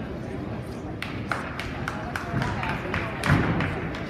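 A gymnast's feet striking a sprung floor-exercise mat: a quick run of footfalls and tumbling contacts, ending in a heavier landing thump about three seconds in, over the chatter of a gym crowd.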